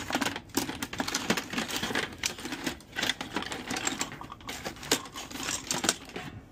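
Hand tools clattering and clinking against each other as a hand rummages through a plastic bucket full of screwdrivers and pliers: a dense, irregular run of clicks and knocks.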